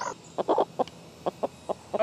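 Domestic chickens clucking, a run of short, separate clucks at uneven intervals.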